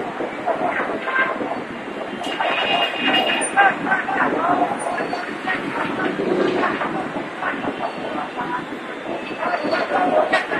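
A light-rail train running on the elevated line over busy street noise, with a brief high wheel squeal about two to three seconds in. People's voices come through the whole time.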